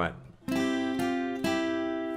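Acoustic guitar, capoed at the third fret, picking three single notes about half a second apart, each left to ring on into the next.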